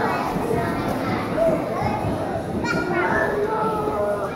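Crowd of children chattering and calling out at once, many voices overlapping in a large hall.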